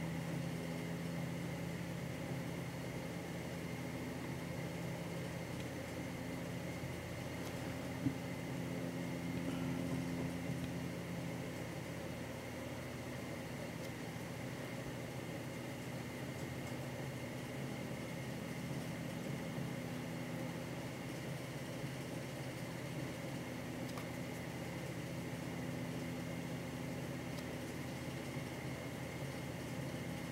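Steady low mechanical hum in the room, with one short faint click about eight seconds in.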